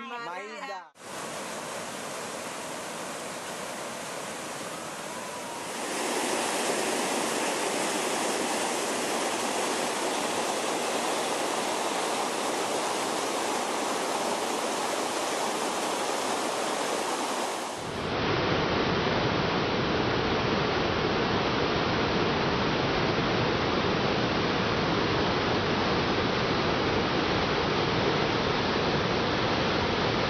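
Rushing water: a stream pouring over rocks, a steady rush that grows louder a few seconds in. Past the middle it changes abruptly to the deeper, fuller rush of a large waterfall.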